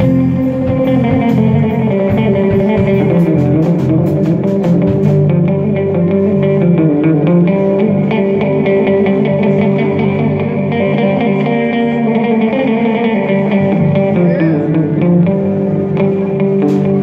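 A live band plays on two electric guitars and an electric bass, with sustained chords and a strong bass line. Sharp percussive ticks sound through the first five seconds, then drop away.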